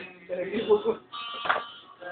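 People talking indistinctly, with a steady buzzing tone coming in about a second in.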